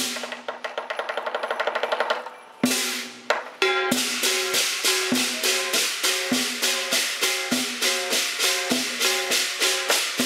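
Chinese lion dance percussion of drum, gongs and cymbals. It opens with a fast roll of strokes lasting about two and a half seconds, then a crash, and from about four seconds in it settles into a steady beat of drum strokes with ringing gongs and clashing cymbals, accompanying the lion's dance.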